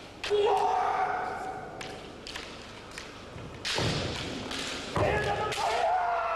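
Bamboo shinai clacking against each other in sharp knocks as two kendo fencers spar. A long, held kiai shout comes about half a second in and another near the end.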